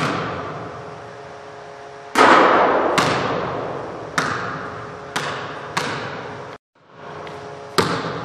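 Basketball bouncing on a hardwood gym floor: about seven single, sharp bounces at uneven intervals of roughly half a second to two seconds, each ringing out with a long echo in the large hall.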